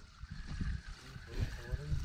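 Faint voices of people talking in the background over a low, uneven rumble, in a short lull between louder speech.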